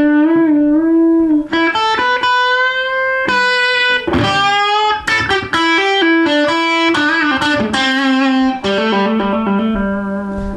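Electric guitar playing an improvised minor-scale lead in A minor. It starts with held notes shaken with vibrato and a long note bent slightly upward, then moves to quicker phrases of short, separate notes before settling on held lower notes near the end.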